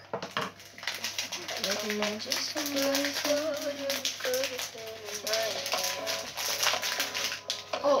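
A song playing, with a sung vocal carrying a slow melody of long held notes, and light clicking over it.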